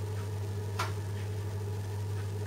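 Steady low electrical hum, with a single light click a little under a second in.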